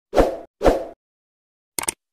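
Two short swooshing sound effects, each with a low thud, about half a second apart, then a couple of quick clicks near the end, from an animated end screen.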